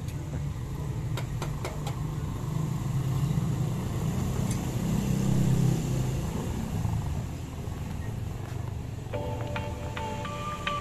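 Low rumble of a passing motor vehicle, swelling to a peak about five seconds in and fading by about seven, with a few light taps in the first two seconds. Background music with chime-like tones comes in near the end.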